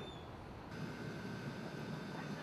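Steady low background hum of room and equipment noise. After an abrupt change about two-thirds of a second in, a faint steady high tone runs alongside it.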